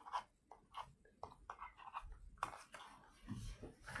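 Faint, scattered mouth sounds and breaths close to the microphone: a few short lip clicks and soft breathy noises with brief gaps between them.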